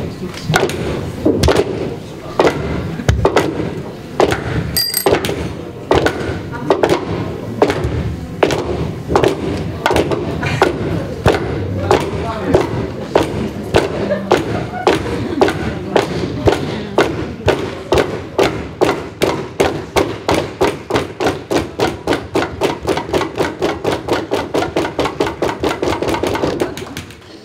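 Walking sticks and crutches knocked on a wooden floor in unison, keeping an even beat that gets steadily faster, from slow knocks to about three a second.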